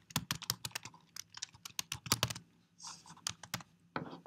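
Typing on a computer keyboard: a quick run of keystrokes for about two seconds, a short pause, then a few more keys.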